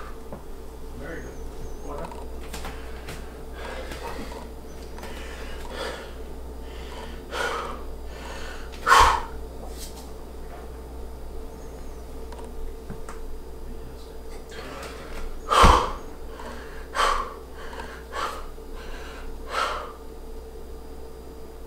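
A bodybuilder's sharp, forceful breaths while holding flexed poses: about a dozen short exhalations, the two loudest about nine and fifteen and a half seconds in.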